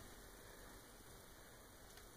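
Near silence: only a faint steady hiss of room tone.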